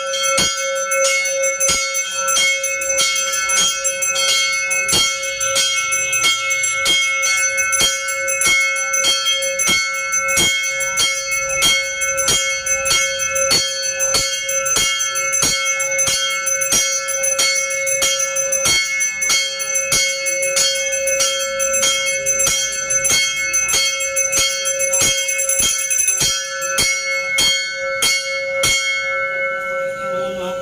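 Brass temple bell rung over and over in an even rhythm, about two to three strokes a second, to accompany the aarti offering; the ringing stops just before the end.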